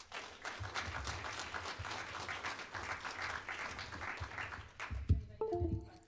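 An audience applauding for about five seconds, dying away near the end. It is followed by a couple of low thumps and a brief voice.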